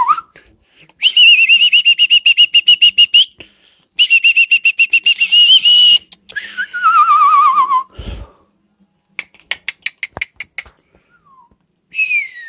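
Senegal parrot whistling: two bursts of a rapid, high trill that pulses at about nine beats a second at one pitch, like an electronic beeping, then a falling warbled whistle. A thump and a run of short clicks follow near the end.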